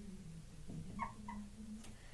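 Faint squeaks of a dry-erase marker writing on a whiteboard: a couple of short, high squeaks about a second in.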